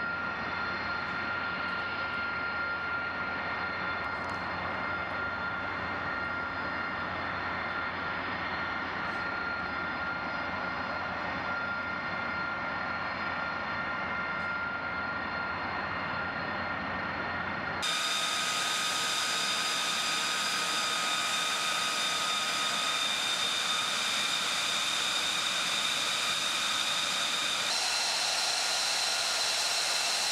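F-35B jet engines (Pratt & Whitney F135) running at ground idle: a steady high whine over a rushing hiss. A little past halfway the sound switches abruptly to a brighter, higher whine, and it shifts again near the end.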